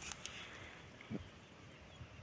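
Quiet outdoor background with one faint, brief sound a little after a second in.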